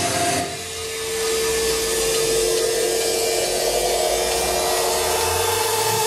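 Amplified electric guitar held as a drone of distorted noise and feedback, with one steady high ringing tone that sets in about half a second in and holds, while the drums stop.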